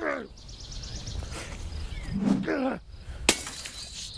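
A sudden sharp crash like something breaking, about three seconds in, after two short vocal exclamations.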